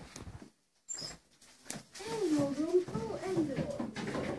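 German Shepherd crying and whining in excitement at greeting her owner, a drawn-out call that wavers up and down in pitch, starting about halfway through.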